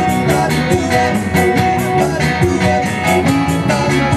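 Live rock band playing: acoustic and electric guitars, bass guitar and a drum kit keeping a steady beat.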